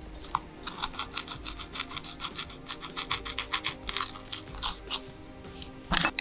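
A hand carving tool cutting into a woodcut block in a rapid series of short scraping strokes, about five a second, with background music underneath.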